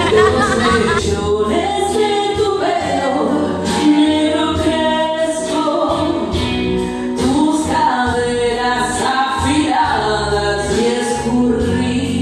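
A woman singing karaoke into a microphone over a recorded backing track, her voice rising and falling in long held notes above a steady bass line.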